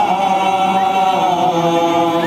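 Men's voices chanting an Assamese nagara naam devotional song, singing long held notes with slight wavers in pitch.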